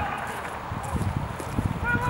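Outdoor ambience at a rugby match: irregular low rumbling and knocking close to the microphone, with faint distant shouts from players near the end.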